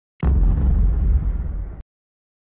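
Deep boom sound effect of the GoPro logo intro: it hits suddenly, stays low and heavy for about a second and a half, then cuts off abruptly.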